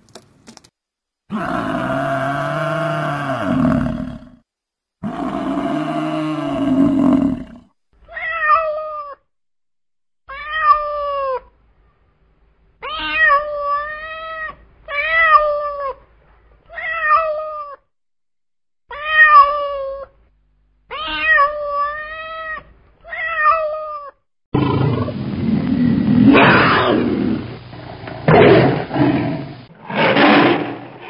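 A domestic cat meowing over and over: about ten short meows, each rising then falling in pitch. Before the meows come two long drawn-out animal calls, and near the end a harsh, rough growling roar.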